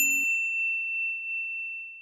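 A single bright bell ding, struck at the start and ringing out as one high tone that slowly fades. The last low notes of the music stop about a quarter second in.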